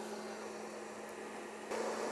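Faint, steady electrical hum with a light hiss.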